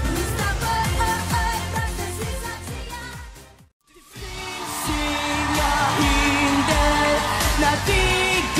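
Pop song with a teenage girl's lead vocal over a dance beat fades out a little over three seconds in. After a brief silence a second pop song starts and builds up.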